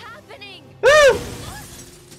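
Cartoon dialogue, a voice asking "What's happening?", then about a second in a loud, short cry that rises and falls in pitch, with a sharp crack-like onset.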